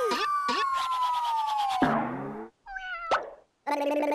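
Cartoon sound effects of something falling and landing: a long falling whistle, then a soft plop on landing about two seconds in, followed by short squeaky cat-like cries and a brief steady squeak near the end.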